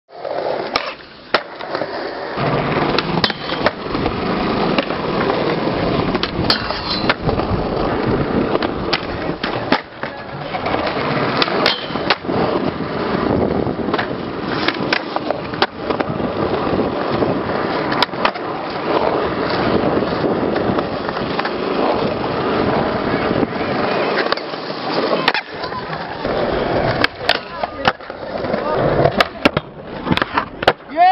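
Skateboard wheels rolling on concrete skatepark surfaces, a steady rolling noise, broken again and again by sharp clacks and cracks of the board popping and landing.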